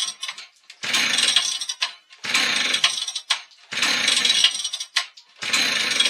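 Husqvarna chainsaw revved in repeated bursts of about a second each, roughly every second and a half, as it cuts with a dull chain.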